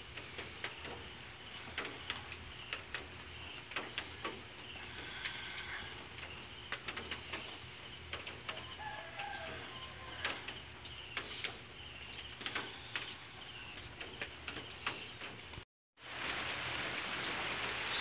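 Faint outdoor ambience: a steady, high, pulsing insect trill with a few scattered bird chirps and small handling clicks. About two seconds before the end the sound drops out briefly at a cut, then comes back with a louder hiss.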